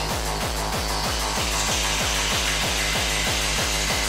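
Hardcore gabber track in a DJ mix: a distorted kick drum pounds about three times a second, each kick dropping in pitch. A hissing noise layer builds up above it over the second half.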